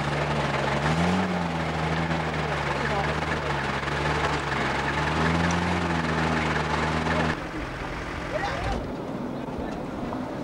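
Steady aircraft engine drone with a slightly wavering pitch, which cuts off abruptly about seven seconds in, leaving a quieter rushing noise.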